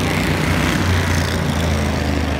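Bandolero race car engines running on the oval as the cars circulate just after the checkered flag: a steady, continuous drone.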